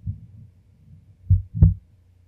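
Two dull, low thumps close together about a second and a half in, the second with a short click on top, picked up at close range by the microphone.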